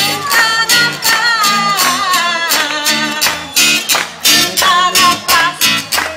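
A woman singing in Albanian, her voice wavering and ornamenting the melody, over musical accompaniment with a steady beat.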